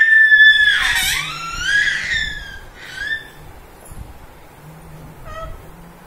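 A baby's high-pitched squeals: a long held squeal at the start running into a wavering one that dips and rises, then a short squeal about three seconds in and fainter short squeaks near five seconds.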